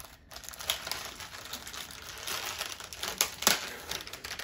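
Plastic wrapper of an Oreo cookie package crinkling as it is pulled open by hand, with many sharp crackles, the loudest about three seconds in.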